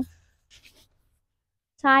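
Mostly near silence after a woman's speech stops, with a few faint, brief scratchy rustles about half a second in; her speech resumes near the end.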